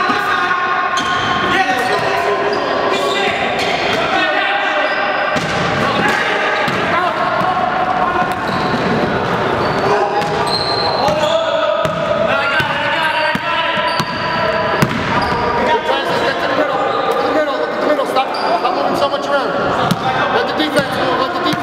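A basketball dribbled and bouncing on a hardwood gym floor, mixed with players' voices calling out, echoing in a large gym hall.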